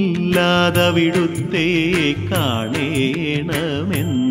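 Music from a Malayalam Hindu devotional song to Shiva: an ornamented melody that glides and bends in pitch, over frequent percussion strokes.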